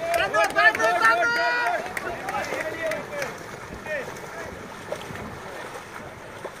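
Raised voices calling out in a quick run of short, repeated shouts for the first three seconds, over a steady rush of wind and water; after that only the wind and water noise goes on.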